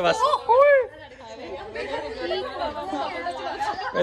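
Several people talking over one another in lively chatter, with one loud voice swooping in pitch in the first second.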